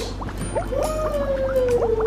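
Underwater bubbling sound effect, a stream of quick rising blips, over background music with one long note that slides slowly downward.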